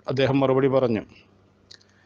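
A man's voice speaking, breaking off about halfway through; then a pause with one faint click.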